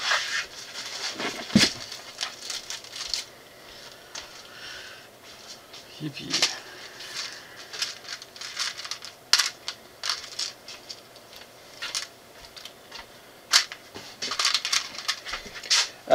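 Small plastic building bricks clicking and clattering as they are sorted by hand in plastic tubs on a wooden table, with scattered short clicks that grow busier near the end and some plastic-bag crinkling.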